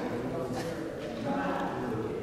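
Indistinct voices of people talking, with a few footsteps on a hard floor.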